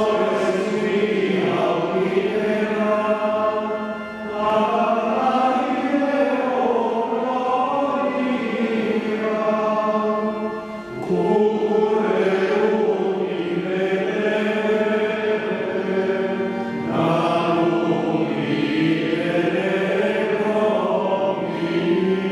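Ambrosian chant sung in Latin by a group of voices, in long phrases with short breaks for breath about every six seconds, over a held low note.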